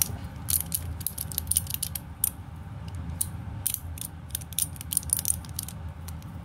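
Chain-of-cubes plastic fidget toy being twisted in the hands, its linked cubes clicking as they turn: sharp, irregular clicks, several a second in quick runs.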